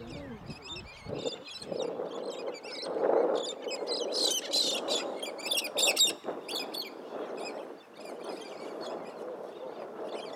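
Birds chirping and calling, thickest in the middle, over a murmur of distant voices.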